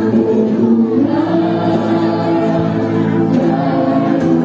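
Music with choral singing in long held notes.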